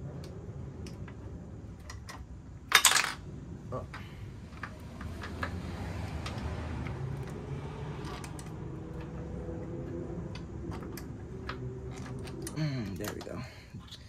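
Small metal clinks and taps of a bolt and Allen key being worked through a motorcycle muffler's mounting bracket, with one loud metallic clank about three seconds in. A low background hum runs underneath and drops in pitch and fades near the end.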